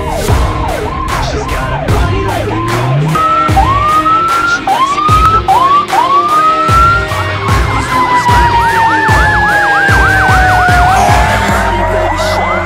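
Electronic emergency-vehicle sirens: a slow wail, then four short rising whoops a few seconds in, then a rapid yelp through the second half, with more than one siren sounding at once.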